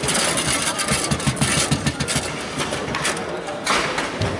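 Table football in fast play: a rapid run of clicks and knocks as the ball is passed and struck by the rod-mounted players and the rods clatter, with one sharp hit near the end.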